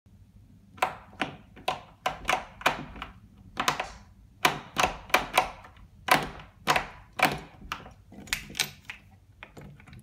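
Thumb-turn knob of a box-shaped rim lock on a door being worked over and over, giving a run of sharp clicks and clunks at uneven spacing, about two a second, fading near the end. The lock will not open to let the people inside out.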